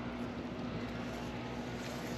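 A steady machine hum holding one constant low tone over an even background noise, without change.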